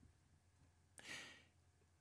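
Near silence, with one faint, short breath by the man about a second in.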